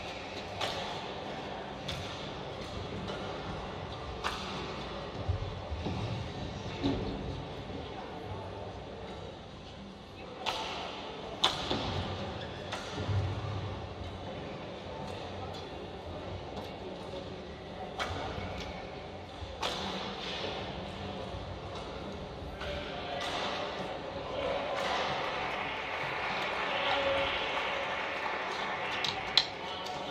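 Badminton rackets striking a shuttlecock in a pre-match warm-up: sharp, single hits at irregular intervals, about a dozen in all. Voices talk over the last few seconds.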